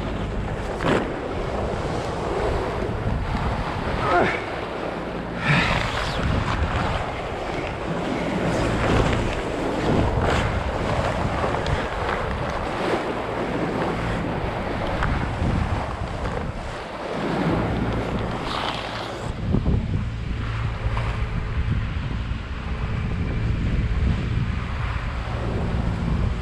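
Wind buffeting the microphone and sea water rushing and splashing along the hull of a sailboat under way, with a steady low hum in the last several seconds.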